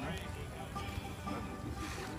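Music playing faintly, with voices in the background, over a low, steady rumble.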